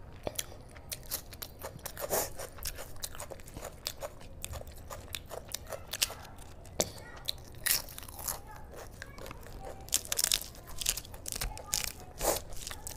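Close-up eating sounds: chewing, with many irregular sharp crunches from crisp papad, mixed with mouthfuls of rice and curry.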